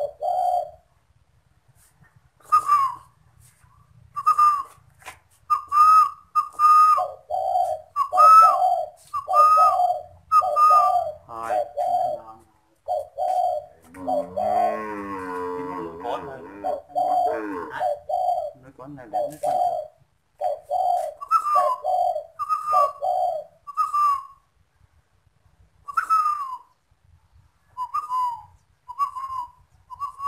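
Caged spotted dove cooing in a long run of short notes. Lower coos are mixed with higher notes that slur downward, with a brief pause near the middle.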